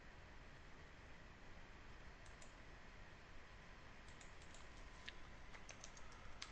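Faint computer keyboard typing over low room hiss: a few clicks about two seconds in, then a quicker run of keystrokes in the last two seconds.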